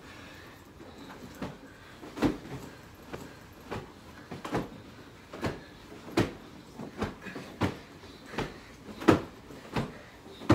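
Pillows hitting in a pillow fight: a string of soft thumps, roughly one every three-quarters of a second, starting about a second in, with the heaviest blows a couple of seconds in and near the end.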